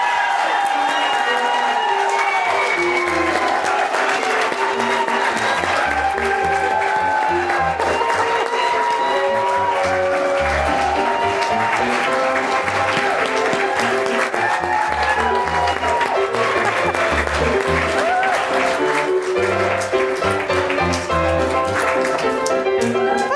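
Audience applauding over recorded music with a melody and a steady bass line, as a guest is welcomed on stage.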